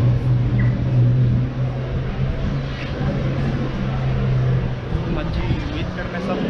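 City street traffic: a motor vehicle's engine running with a steady low hum over general road noise, the hum dropping away about four and a half seconds in.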